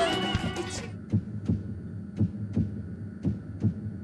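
A song with singing ends about a second in. It gives way to a soft, heartbeat-like background pulse, about three beats a second over a low hum: a suspense underscore.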